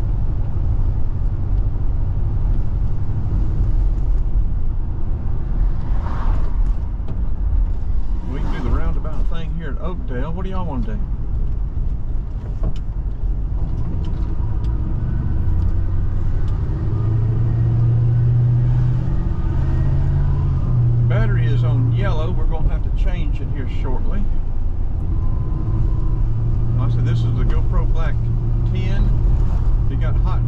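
Car cabin noise while driving: a steady low rumble of engine and tyres on the road, with a stronger low hum from about halfway through. Voices come in at times over it.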